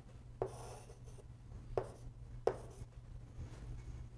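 Chalk on a chalkboard: a short faint scrape as a line is drawn, then a few sharp taps of the chalk on the board, over a low steady hum.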